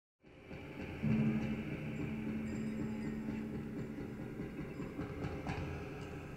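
A low, steady droning tone that comes in about a second after silence and holds for several seconds, with a lower hum beneath it.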